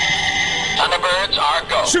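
Electronic sound effects from a toy advert soundtrack: a steady, high electronic tone for most of the first second, then a warbling, wavering sound.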